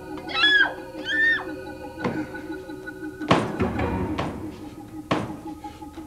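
Film soundtrack with a steady low musical drone, two short high-pitched gliding sounds in the first second and a half, then three sharp knocks about two, three and five seconds in.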